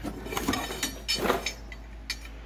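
A few short clanks and rattles of old steel lineman's pole climbers being picked up and handled among clutter.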